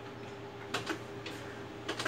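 Irregular clicks of buttons on an ultrasound machine's control panel, about four in two seconds, over a steady low hum.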